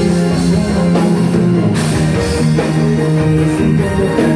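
Live band playing loud amplified music, with guitars and drums, steady throughout.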